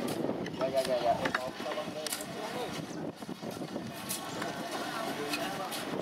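Indistinct voices of people talking in the background, over steady outdoor noise, with scattered light clicks and knocks.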